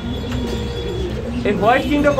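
Caged domestic pigeons cooing in low, throaty calls.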